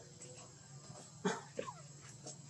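Macaque calls: a short, loud cry about a second and a quarter in, its pitch falling steeply, then a shorter falling whimper just after.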